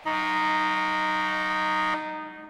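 A loud, steady chord of several held tones, like a horn blast. It starts right away, holds for about two seconds, then dies away.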